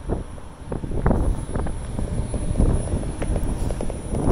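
Wind buffeting the microphone: an uneven, gusty low rumble with a few short knocks mixed in.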